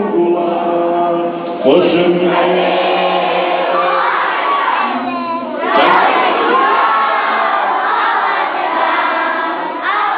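A group of voices singing together in chorus, with louder phrases coming in about two seconds in and again near six seconds.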